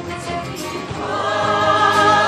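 Show choir singing over a live band with a horn section. About a second in, the music swells into louder held notes.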